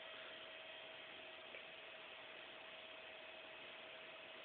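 Faint, steady high-pitched whine, described as screaming, from a self-oscillating Bedini SSG (Daftman) single-coil transistor circuit running from a 16 V DC input. It is one steady tone with a few fainter higher tones and a hiss, unchanging throughout.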